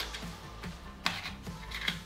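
Plastic dark slide being slid and rubbed into an empty Instax Mini film cartridge, with two sharp plastic clicks about a second apart. Quiet background music runs underneath.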